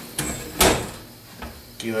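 Heavy sheet-metal oven door swung shut with one loud metallic bang about half a second in, ringing briefly, followed by a fainter knock from the door or its handle.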